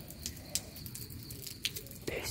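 Low background noise with a few faint short clicks, the clearest about half a second and a second and a half in.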